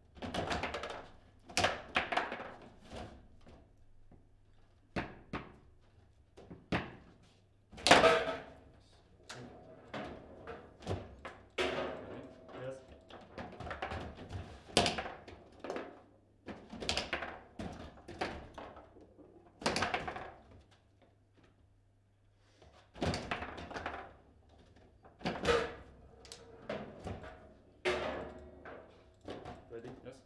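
Table-football (foosball) table in play: irregular sharp knocks and thunks as the ball is struck by the rod figures and hits the table. The loudest shot comes about 8 seconds in.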